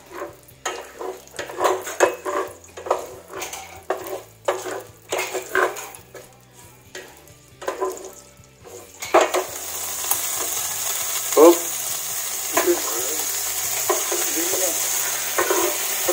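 Wooden spatula stirring and scraping sautéing garlic, onion and ginger in a stainless steel frying pan, with short clacks against the pan. About nine seconds in, the frying sizzle grows loud and steady.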